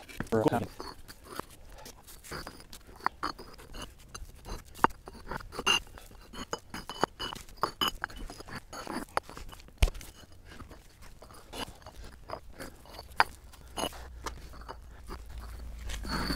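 Concrete pavers being stacked one by one onto a lightweight concrete test panel as a load: repeated irregular clacks and short scrapes of block set down on block.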